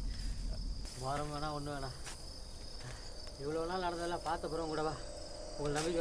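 Crickets chirring steadily in a night-time film soundtrack, with a man's voice speaking in three short phrases over them.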